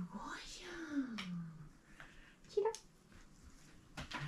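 Soft, half-whispered praising speech to a dog, with a long falling drawn-out syllable in the first second or so and a short higher utterance near the end.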